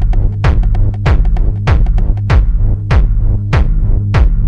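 Techno track: a deep sustained bass line under a kick drum hitting about every 0.6 seconds, with quick hi-hat ticks during the first half.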